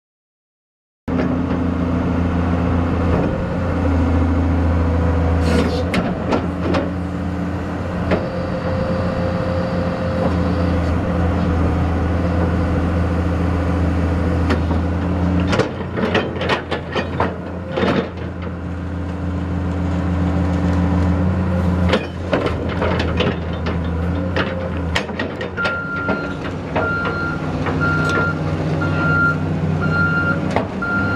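1993 Caterpillar 320L excavator's Caterpillar 3066 six-cylinder diesel running, its note shifting several times as the hydraulics work, with intermittent clanks and knocks from the machine. About 25 seconds in, its travel alarm starts beeping about once a second.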